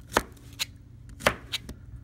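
Chef's knife chopping through pineapple and knocking on a plastic cutting board: about five sharp chops. The two loudest come just after the start and a little past halfway.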